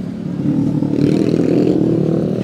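A motor vehicle engine running close by, getting louder about half a second in.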